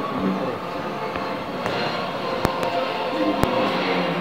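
Steady background din of voices and music, with three sharp clicks in the second half.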